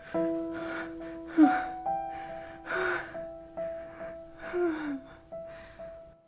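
A man's gasping sobs, about one a second, over soft sustained background music notes.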